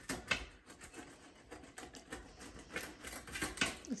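Pizza cutter wheel rolling through a thick-crust pizza on a metal pan: a run of irregular crunching and scraping clicks.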